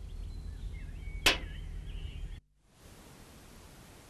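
A single sharp click of a Chinese chess piece being set down on the board, over faint bird chirps and a steady low outdoor rumble; the background cuts off abruptly about two and a half seconds in.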